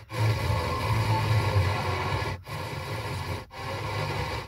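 Car FM radio tuned between stations: static hiss with weak, noisy broadcast audio underneath. It cuts out briefly at the start, again about two and a half seconds in and again about three and a half seconds in, as the tuner mutes while stepping to the next frequency.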